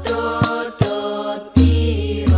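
A male voice singing a sholawat melody into a microphone, accompanied by Al-Banjari hadrah frame drums (rebana) that strike several times, with a deep, strong drum stroke about one and a half seconds in.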